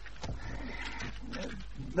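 A person's quiet, low vocal sound, a murmur or groan rather than words, lasting about a second and a half, with a few light clicks at the start.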